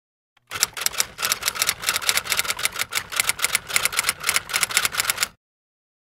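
Typewriter key clatter: a rapid, fairly even run of clacks, several a second, starting about half a second in and cutting off suddenly near the end.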